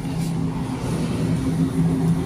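Steady low mechanical hum of a supermarket freezer display case's refrigeration, two even tones over a background hiss.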